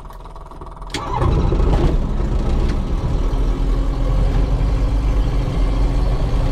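A light aircraft's piston engine starting from inside the cockpit: it catches about a second in and settles into a steady idle.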